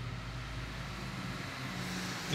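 Low steady background hum with faint room noise.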